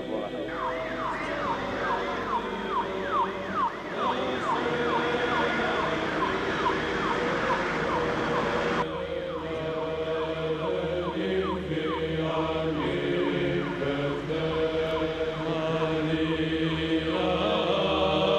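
A siren sweeping rapidly up and down in pitch, two to three sweeps a second, over voices singing Orthodox chant in long held notes. The sweeps thin out about halfway through.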